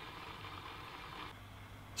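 Faint steady hiss of water starting to heat around a 220 V immersion heater's element, over a low hum. The hiss thins out about a second and a half in.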